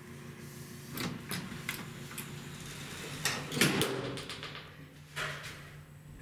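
Elevator car doors sliding shut on a modernized Haughton traction elevator: a few light clicks, then the doors run closed with the loudest rush and thud a little past the middle. A steady low hum follows as the car sets off down.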